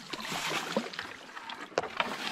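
Reed stalks and leaves rustling and crackling as they brush along a kayak pushing through a narrow reed tunnel. A sharper snap comes near the end.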